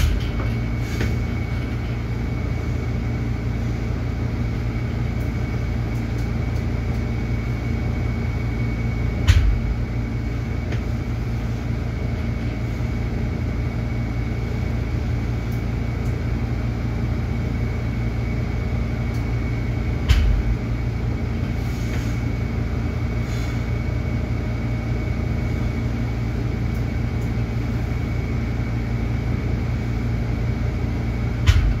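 Steady low mechanical hum with a faint, steady high whine above it, broken by two single knocks about nine and twenty seconds in.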